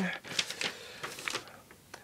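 Rustling and a few light clicks from folded camouflage cargo pants being handled on crumpled brown packing paper, growing sparser toward the end.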